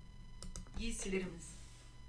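A quick cluster of computer mouse clicks about half a second in as a word tile is selected, followed by a short spoken word.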